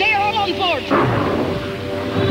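A cartoon explosion sound effect: a sudden blast about a second in, trailing off into a low rumble, over sustained background music. Before it comes a wavering, sliding sound.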